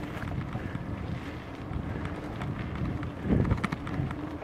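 Wind buffeting the microphone over a rough rumble and rattle of riding along a dirt trail, with scattered knocks and a louder thump from a bump a little over three seconds in.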